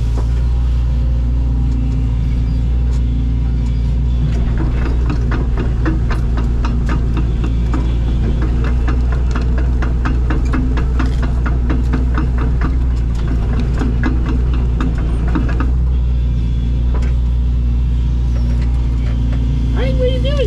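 Excavator's diesel engine running steadily at working revs, heard from inside the cab. From about four seconds in to about sixteen seconds in, a rapid even clatter rides over it as the machine travels on its tracks.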